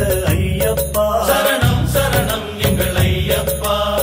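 Tamil Ayyappan devotional song: music with a repeated low beat and chanting voices.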